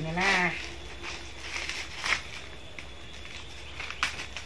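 A goat bleats once, a short quavering call at the very start. Dry corn husks rustle and crackle faintly as cobs are stripped by hand, with one sharper crack about two seconds in.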